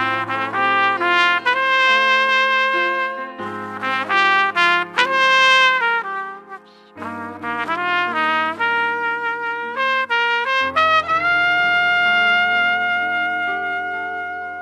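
A trumpet plays a slow melody over piano accompaniment, in phrases that begin about 3.5, 7 and 10.5 seconds in. The last phrase is one long held note.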